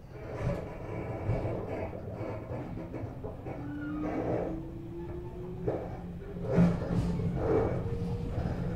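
Onboard running sound of a 413 series electric train motor car with MT54 traction motors, accelerating: a low rumble, with a motor whine that rises steadily in pitch from about three and a half seconds in. Several short knocks come through, the loudest a little past six and a half seconds.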